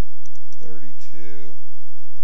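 A few computer keyboard keystrokes as numbers are typed, with a brief stretch of voice in the middle.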